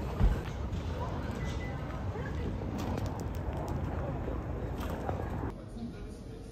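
Outdoor street ambience with a steady low rumble and indistinct chatter of people talking, and a single low thump just after the start. About five and a half seconds in, it drops to a quieter indoor hush.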